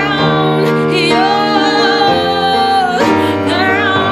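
A woman singing a slow song live to piano accompaniment, holding long notes with vibrato. New piano chords are struck about two and three seconds in.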